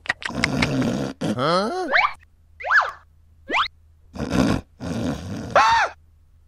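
Cartoon sound effects for a clay stop-motion character: short noisy bursts alternate with several springy, sliding tones that sweep up in pitch. The last of these, near the end, arches up and back down.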